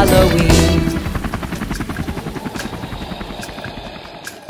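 Helicopter rotor chopping in quick pulses, fading away steadily, with music that ends about a second in.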